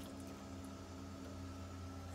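Steady low hum of a reef aquarium's sump equipment (pumps and protein skimmer) running, with a faint wash of moving water.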